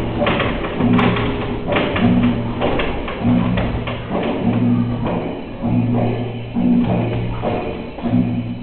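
Music with a steady beat: a low bass note repeating about once a second, with sharp taps between.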